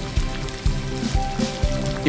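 Background music with held tones, and under it the sizzle and bubbling of pork pieces deep-frying in hot lard.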